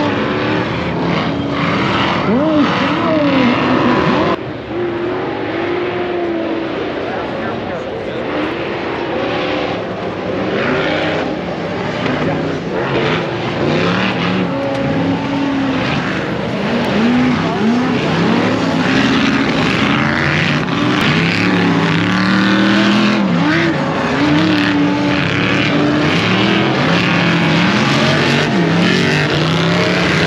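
Off-road race car engines revving up and down again and again as the vehicles run the course, with a sudden change in the sound about four seconds in.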